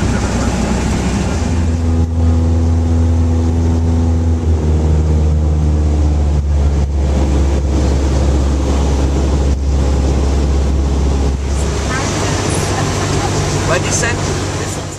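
Single-engine Cessna's piston engine and propeller droning steadily in the cabin, a strong low hum that settles in about a second in and thins out near the end.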